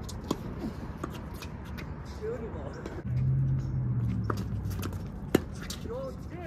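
Tennis ball struck by racquets in a doubles rally: sharp hits, one early and the loudest about five seconds in. Faint voices and a low hum that swells in the middle sit behind them.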